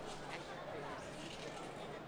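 Faint background chatter of a crowd, many voices blurred together with no one speaker standing out.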